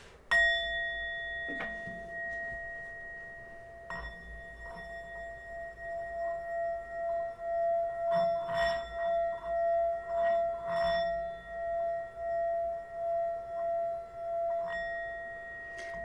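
A metal singing bowl is struck with a wooden mallet and rings with a steady, clear tone, then is struck again about four seconds in. The mallet is then run around the rim, so the ringing swells and fades in a slow, regular pulse.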